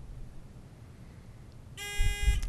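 Quiz-bowl contestant buzzer sounding with a steady electronic tone near the end, a team buzzing in to answer; before it only faint studio room noise.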